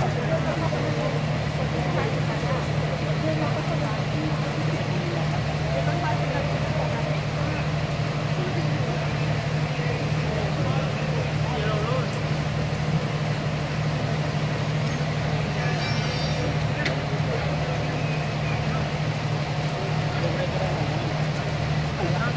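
Steady low drone of a vehicle engine running in place, unchanging throughout, with faint voices behind it.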